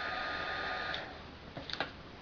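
Handheld craft heat gun blowing hot air onto an acetate flower to soften the petals: a steady fan whine that cuts out about a second in, followed by a few faint clicks.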